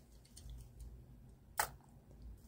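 Quiet low hum with a few faint light ticks as die-cast toy cars are handled, and one short, sharper sound about one and a half seconds in.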